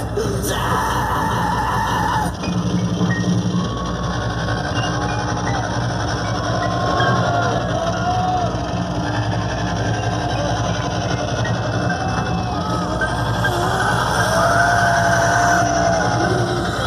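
Heavy rock music playing loudly through a large concert sound system, heard from inside the crowd, with crowd voices over it.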